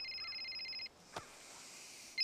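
Mobile phone ringing: one trilling electronic ring lasting about a second.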